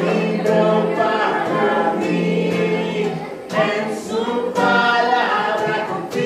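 Music: a song sung by several voices together.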